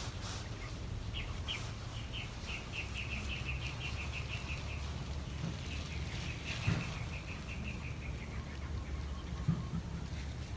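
A bird calling twice, each call a run of short high notes that speeds up and drops slightly in pitch. A sharp thump about two-thirds of the way through is the loudest sound, with a smaller one near the end.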